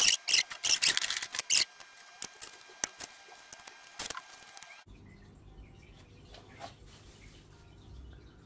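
Dry wooden aquascaping branches clicking and crackling as they are handled and pulled out of an aquarium. The clicks are dense for the first two seconds or so and then sparser until about four seconds in. After that there is only a faint low hum.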